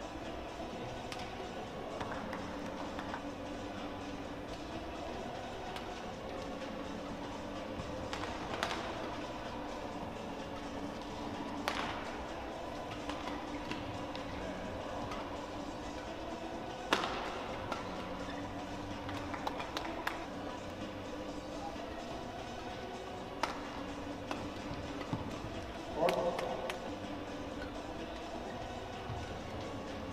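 Badminton doubles rallies: sharp, scattered racket strikes on a shuttlecock, a few seconds apart, over a steady arena hum and a murmur of voices.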